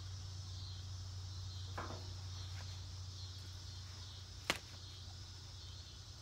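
Quiet handling of a rubber hose and a utility knife over a steady low hum: a faint scrape about two seconds in and one sharp click about four and a half seconds in.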